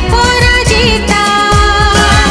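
A TV serial's opening title song: a voice singing a wavering melody over a fast, steady drum beat.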